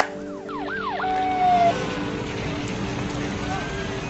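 Emergency vehicle siren sweeping down and up in pitch a few times, then holding one steady tone for under a second, over a steady din of background noise.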